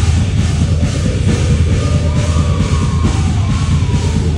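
A metal band playing loud and live, with heavy drums and distorted guitars throughout. A held, slightly bending high note rises over the mix in the second half.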